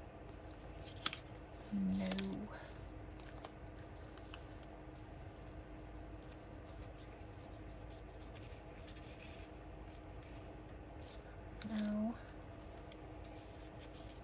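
Paper die-cut pieces rustling and being shuffled by hand in a plastic storage box, with light scrapes and clicks. A person hums briefly twice, about two seconds in and again near the end.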